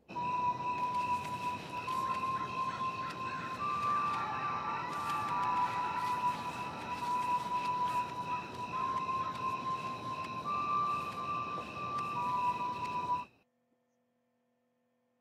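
Electronic beeping tones switch back and forth between two close pitches over a steady hiss, with scattered clicks, like a computer-data sound effect from the music video's closing sequence. The sound cuts off abruptly near the end.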